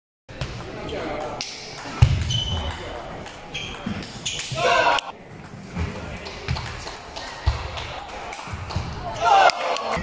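Table tennis rallies: the celluloid ball clicks sharply off the paddles and table, with sneakers thudding on the hall floor. A short voice burst comes a little before halfway and again near the end.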